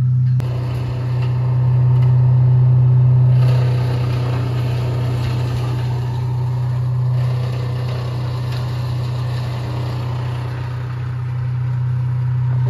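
A large engine running steadily at idle: a constant low drone that swells somewhat about two to three seconds in.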